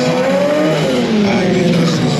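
Stunt motorcycle engine revving up and down, its pitch rising and then falling off, as the bike is ridden through a trick.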